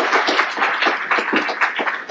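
A small audience applauding: a dense patter of hand claps.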